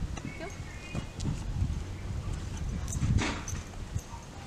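Footsteps on an asphalt street as a person and a dog set off walking at heel, with wind rumbling on the microphone.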